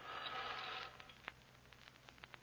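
Radio-drama sound effect of blinds being drawn: a scraping swish lasting just under a second, followed by a few faint clicks.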